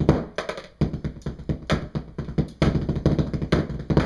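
Snare and tenor drum parts of a drumline cadence played with drumsticks: fast, dense stick strokes, breaking off briefly a little under a second in, then driving on.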